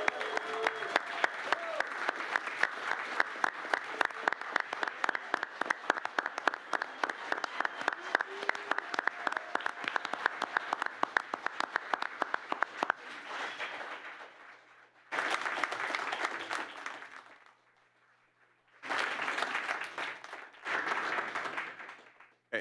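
A large crowd applauding, dense and steady, with a few voices calling out in the first seconds. The clapping fades out about fourteen seconds in, and shorter bursts of it follow near the end.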